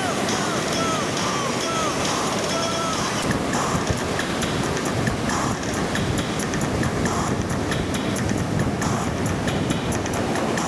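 Ocean surf breaking and rushing at a steady level, with wind buffeting the microphone. A run of short, repeated curved whistling notes sits over it in the first three seconds.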